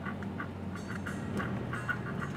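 Steady low drone of a moving vehicle heard from inside its cabin, with a quick, uneven run of short mid-pitched pulses, several a second, over it.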